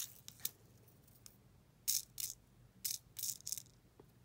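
Small dragon scale glitter flakes rattling and scraping in a plastic tray as a pick tool picks them out, in about six short, crisp rustles.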